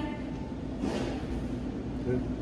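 Low store background noise with a faint, indistinct voice about a second in.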